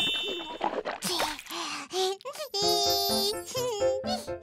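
Cartoon sound effect of a child swishing water around in the mouth, followed by a short bright musical jingle of held notes starting a little after halfway.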